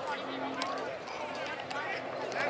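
Indistinct chatter of several people talking, with a faint steady hum underneath.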